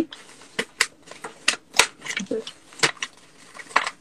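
A sheet of paper being folded and creased by hand: a run of short, irregular crisp crackles and taps as the paper is pressed and bent.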